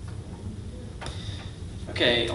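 Low steady hum with a few faint clicks, and one sharper knock about halfway through as a handheld microphone is picked up off a wooden lectern.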